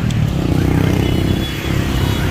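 Motor scooters and cars driving through a busy city intersection: steady engine and tyre noise, with one vehicle passing close in the first second or so.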